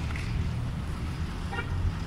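Outdoor town ambience: a steady low rumble, and a single brief horn-like toot about one and a half seconds in.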